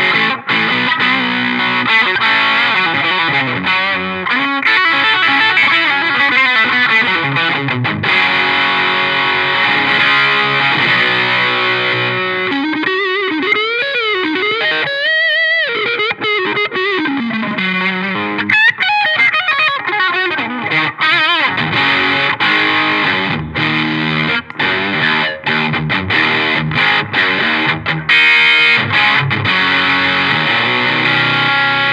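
Les Paul-style electric guitar played through an Electro-Harmonix OD Glove overdrive pedal with its gain turned up, into a Marshall amp: distorted rock riffs, with a lead passage of string bends and wide vibrato about halfway through.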